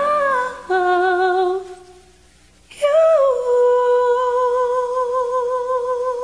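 A woman's voice singing without accompaniment: a short phrase of held notes with vibrato, a pause of about a second, then one long held note with steady vibrato.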